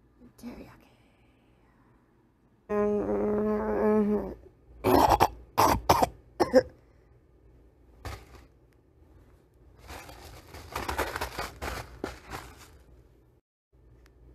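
A person's voice held on one note for a bit over a second, then a quick run of four or five coughs or throat-clearing bursts. Several seconds later comes a stretch of crinkling and rustling as the plastic noodle packet and bedding are handled.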